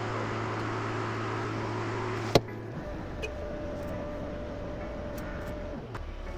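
A 55MT-5K mini excavator's diesel engine running steadily, heard from the operator's cab. A single sharp click comes about two and a half seconds in. After it the engine sound drops lower, and a thin steady tone runs until near the end.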